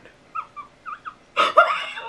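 A woman whimpering in fear with her fists pressed to her mouth: a few short high squeaks, then a louder breathy whine about one and a half seconds in.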